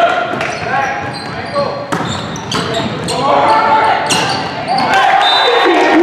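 Volleyball rally in a gymnasium: a few sharp smacks of the ball being played, over players' and spectators' shouts that rise into cheering near the end as the point is won.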